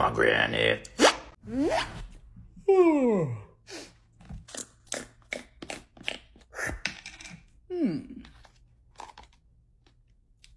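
Beatboxer's mouth sound effects: rising and falling pitch glides like a boing, with a long falling one about three seconds in, then a run of quick clicks and pops, and another falling glide near the end.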